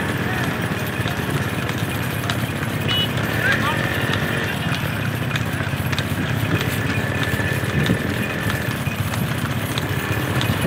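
Hooves of a pair of running bullocks clattering on asphalt as they pull a cart, over the steady running of motorcycle engines.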